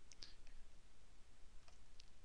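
A few faint computer mouse clicks, two shortly after the start and a couple more near the end, over a low steady room hum.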